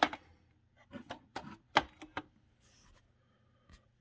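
Plastic DVD cases in shrink wrap being handled: a scattering of light clicks and taps, the sharpest a little under two seconds in, with a brief faint rustle of the wrap.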